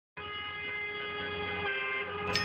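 A steady held chord of several tones sounding together. It starts abruptly just after the opening and holds at one pitch without wavering.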